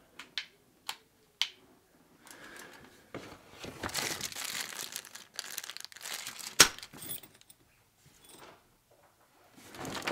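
Packaging rustling and crinkling as it is rummaged through by hand for a missing drill bit. A few light clicks come in the first second and a half, and one sharp click comes about two-thirds of the way through.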